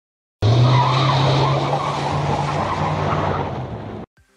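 Tyre-screech sound effect with a steady low engine note beneath it. It starts suddenly about half a second in and eases off slightly toward the end.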